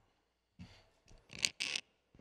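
Handling noises picked up by a lectern microphone: a few short rustles and scrapes, the loudest pair about a second and a half in.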